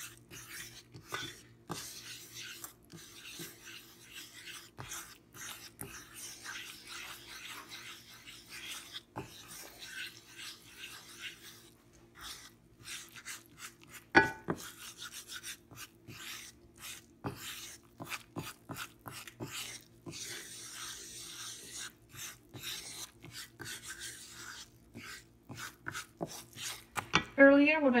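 Wooden spoon scraping and stirring a browning butter-and-flour roux in a nonstick frying pan, in many irregular strokes, with one sharper knock of the spoon about halfway through. A faint steady low hum runs underneath.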